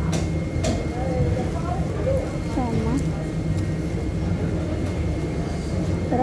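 Busy indoor market ambience: background voices of shoppers and vendors over a steady low hum. A few brief crinkles come from plastic produce bags being handled, near the start and again about three seconds in.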